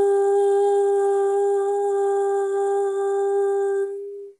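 A woman humming one long, steady note with closed lips, the pitch held unchanged, fading out near the end.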